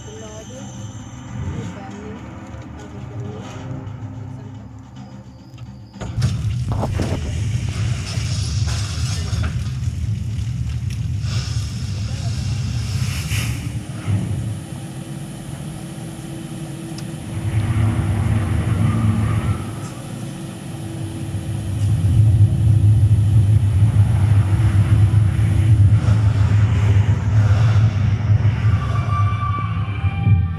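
Film soundtrack over a cinema sound system: a deep rumble with a rushing hiss comes in suddenly about six seconds in and grows louder from about twenty-two seconds, with voices and music mixed in.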